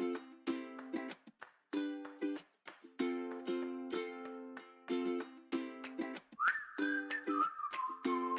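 Background music: plucked-string chords strummed in a steady, bouncy rhythm, with a whistled tune coming in near the end.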